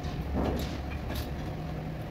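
Workshop noise: a steady low hum with a louder rushing swell about half a second in and a few light clicks, as hand tools work the bolts of a beadlock wheel ring.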